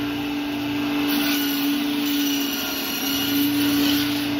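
Electric band saw running with a steady hum while its blade slices through a whole katla fish.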